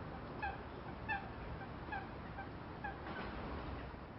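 Short, repeated bird calls, about two a second, each a brief pitched note over a steady outdoor background hiss.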